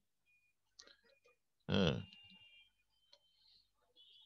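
Mostly quiet, with a few faint clicks and one short vocal sound from a man a little under two seconds in.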